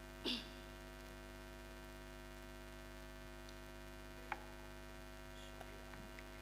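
Steady electrical mains hum from the stage sound system, with a short noise just after the start and a single sharp click about four seconds in.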